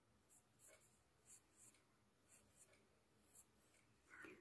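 Very faint scratching of a graphite pencil on drawing paper: a series of short strokes, about one every half second.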